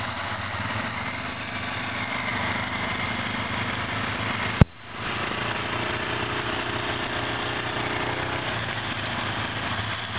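Quad (ATV) engines idling close by with a steady low note. About halfway through there is a sharp click and a brief gap before the engine note resumes.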